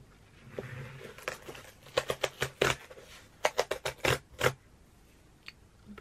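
Cardboard mailer box torn open by its perforated tear strip: two runs of sharp ripping crackles a few seconds in.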